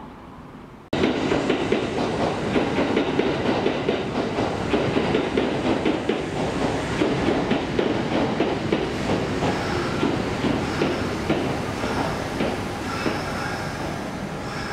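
Kintetsu 5209-series electric train running through yard pointwork, its wheels clattering irregularly over rail joints and turnouts. The clatter starts abruptly about a second in, and thin wheel squeal joins it from about the middle.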